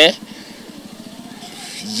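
A pause in a man's speech, filled by faint outdoor street background noise. His last word trails off at the very start.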